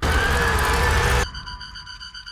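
Horror-film sound design: a loud rushing noise with a faint slowly rising tone inside it, cutting off suddenly just over a second in, then quieter high tones pulsing rapidly.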